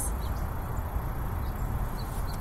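Outdoor background noise: a steady low rumble with a few faint high chirps.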